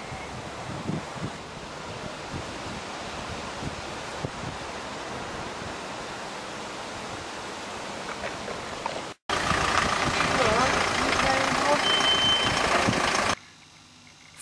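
Steady outdoor background noise with wind on the microphone. About nine seconds in it cuts off suddenly and comes back louder, with faint voices in it, and drops away again just before the end.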